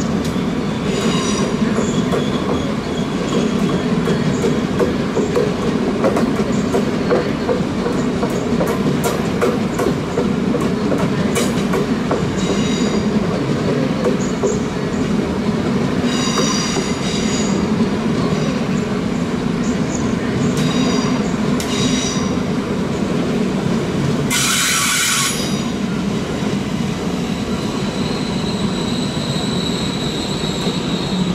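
SBB passenger coaches rolling slowly through the station, their steel wheels squealing on the rails in repeated high-pitched episodes over a steady rumble, with scattered clicks over rail joints. About 25 seconds in comes a loud burst of hiss lasting about a second, and near the end a steady high squeal sets in.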